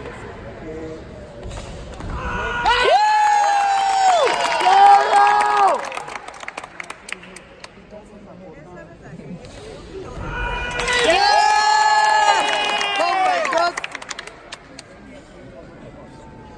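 Spectators shouting long, high cheers of encouragement in two bouts of about three seconds each, a few seconds in and again past the middle, with several voices overlapping. Faint sharp clicks in between.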